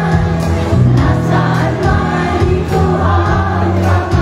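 Live concert music over a PA: a band playing a slow ballad with a steady beat and sustained bass notes, while singers on stage and many voices in the audience sing along.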